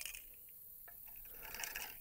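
Faint handling of a disassembled KCI steel AK magazine and its spring: a few light clicks, one at the start and one just under a second in, with scattered ticks near the end.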